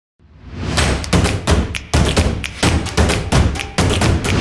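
Logo intro sting: a quick run of heavy percussive hits with deep booms, about three or four a second, fading in at the start.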